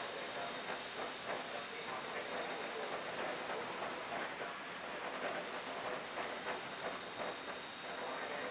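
Bangkok BTS Skytrain running along its elevated track, a steady rushing rumble, with brief high-pitched squeals about three seconds in and again around five and a half seconds.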